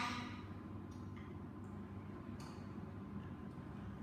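Quiet room tone: a low steady hum with a few faint clicks.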